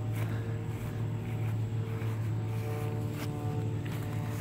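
Footsteps through dry grass, a few soft steps, over a steady low hum with faint higher tones that come and go.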